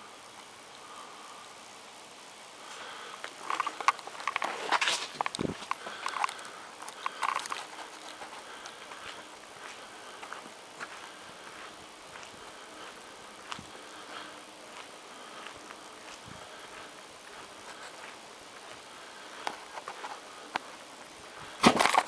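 Quiet outdoor background hiss with scattered rustles and clicks from a handheld camera being moved, busiest a few seconds in, then a sudden loud noise right at the end.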